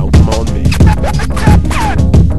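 Abstract hip-hop backing track: a heavy kick-and-bass beat with turntable-style scratches sliding up and down in pitch over it.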